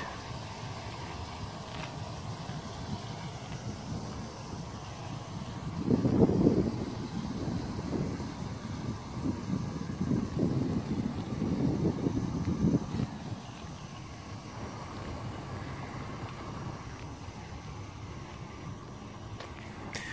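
Wind buffeting the microphone outdoors, a steady low rumble that gusts louder and more ragged for several seconds about six seconds in.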